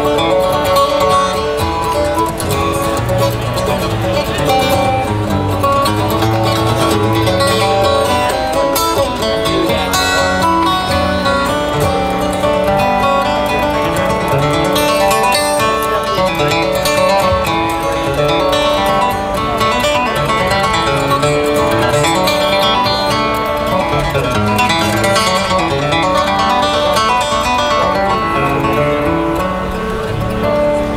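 Solo acoustic guitar playing an instrumental tune, a steady stream of picked single notes and chords.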